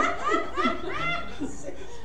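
Laughter in short rhythmic peals, dying away over the first second and a half.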